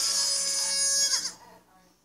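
A high-pitched cartoon voice over the end-card music, cutting off abruptly about a second and a half in, followed by near silence.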